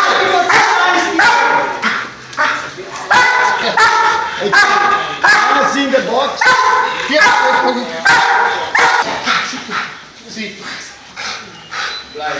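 A dog barking over and over in quick succession, about one and a half barks a second, dropping off and turning quieter near the end.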